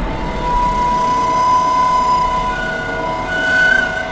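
Sustained drone of a film background score: a held high note over a steady rumbling bed, moving to a higher note in the second half and swelling slightly near the end.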